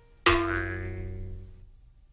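A single edited-in sound-effect hit: a sharp attack with a ringing, pitched tone that fades away over about a second and a half.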